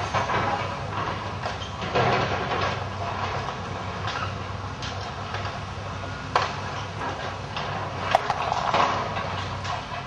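Hydraulic excavator demolishing a building: its diesel engine runs steadily under the crunching and clattering of breaking masonry and roof timbers, with sharp knocks about six and eight seconds in.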